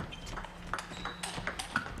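Table tennis rally: the celluloid-type plastic ball clicking off the rubber paddles and the table in a quick run of light, sharp clicks.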